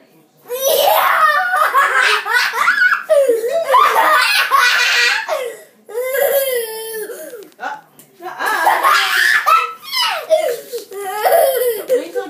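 A young child laughing hard and loud, in four long bouts of belly laughter with short breaks between them, starting about half a second in.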